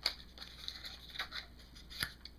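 Faint rustling and a few light clicks of a small cardboard cosmetic sleeve being handled as a gel eyeliner jar is taken out of it.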